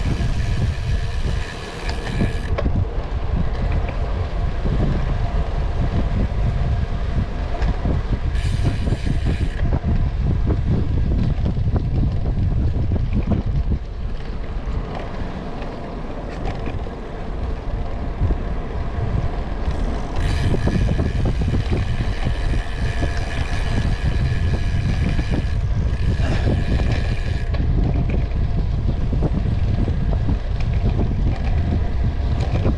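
Wind rumbling over the microphone of a camera on a moving road bike, with tyre and drivetrain noise underneath. A brighter hiss rises and falls away several times.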